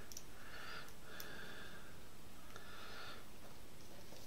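Quiet room tone with three soft breaths from a person close to the microphone, about a second apart.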